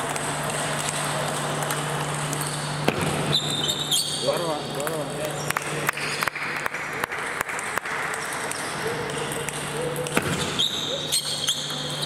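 Table tennis balls ticking irregularly off tables and rackets in a sports hall, over a steady low hum and background voices.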